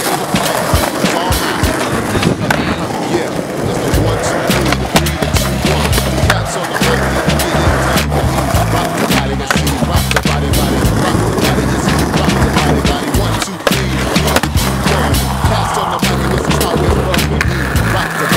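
Skateboard wheels rolling on concrete, with sharp clacks of tail pops and board impacts, over music with a deep stepping bass line that comes in about four seconds in.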